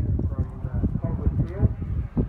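Indistinct talking, with a steady low rumble underneath.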